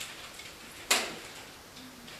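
Felt-tip marker writing on a whiteboard in short faint scratches, with one sharp tap about a second in.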